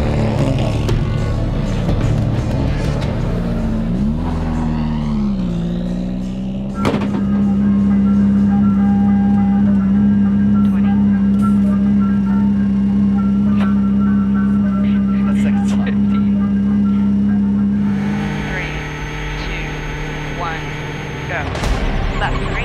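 Subaru WRX STI rally car engine revving down and back up, then holding a steady note for about ten seconds, under background music.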